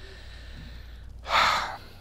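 A single sharp, loud breath, a quick gasp or sigh close to a lapel microphone, lasting about half a second, about a second and a half in.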